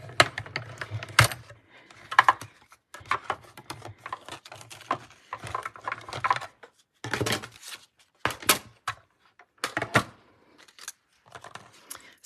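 Mini Stampin' Cut & Emboss Machine hand-cranked for the first second or so, ending in a sharp click, then irregular clicks, taps and paper rustles as the cutting plates are handled and the die-cut leaf is pulled from the paper.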